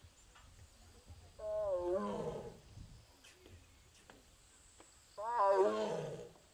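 Amur tiger calling twice, each call about a second long, the first about a second and a half in and the second near the end. Each starts as a pitched tone and turns rough. The calls are those of a tiger separated from its sibling.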